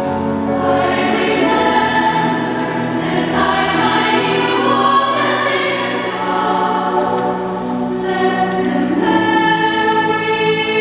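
Children's choir and women's vocal ensemble singing together, holding long sustained chords that move in steps, in a church.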